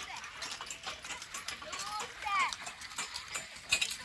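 A pair of Percheron horses pulling a horse-drawn riding plough: a steady run of clinks and knocks from harness and plough, with hoof steps. A few short high squeaks come about two seconds in.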